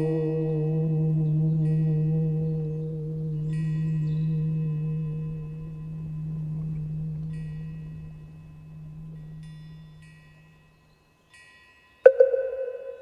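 A deep struck bell rings on and slowly dies away, its hum swelling and fading in slow beats. Light high chimes tinkle over it in short spells. It fades out shortly before the end.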